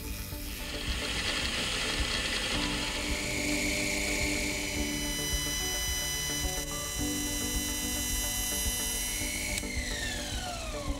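Fine metal-cutting sounds from small lathe work, with steady light clicking and rattling: a slitting saw slotting a screw head, then a lathe tool turning a brass screw head. Soft background music with long held chords plays under it.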